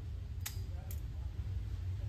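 Taurus Tracker .357 Magnum double-action revolver misfiring: two sharp clicks about half a second apart as the trigger drops the hammer and no shot goes off. A steady low hum runs underneath.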